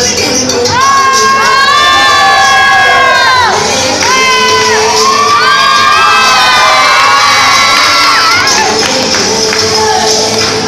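Audience crowd cheering and shouting loudly, with many long, high calls rising and falling over one another from about a second in until shortly before the end.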